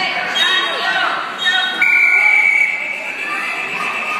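Scoreboard buzzer sounding once, a steady tone lasting under a second and the loudest sound here, over spectators' voices in a gym; it marks the end of the wrestling period, as the wrestlers break apart.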